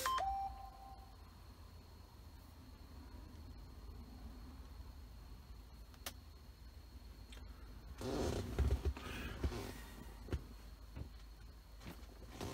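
A short electronic beep just after the start over a quiet cabin hum, then a few faint clicks and a louder stretch of rustling, handling-type noise about eight to ten seconds in.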